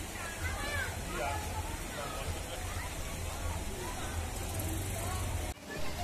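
Background voices of people, children among them, calling and chattering over a steady low rumble. The sound breaks off sharply for a moment near the end.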